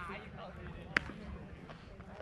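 A single sharp crack of a baseball at home plate about a second in, with voices around it.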